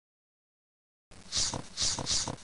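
Quick, hissing breaths close to the microphone, starting about a second in, two in quick succession.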